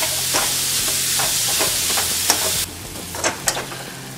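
Grated ridge gourd frying in a metal kadhai with a steady sizzle while a spatula stirs it, with short scrapes of the spatula on the pan. The sizzle drops off sharply near the end, leaving a few fainter scrapes.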